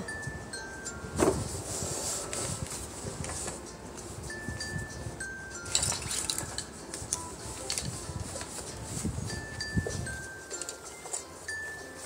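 Background music: a slow melody of single chiming, bell-like notes. Under it come soft bumps and rustling as a baby doll is handled and set into a plastic toy car seat, with a thump about a second in and a few more near the end.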